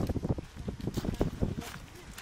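Footsteps of several walkers and the tips of their walking poles on a gravel track: irregular crunches and clicks, several a second, with a little wind noise.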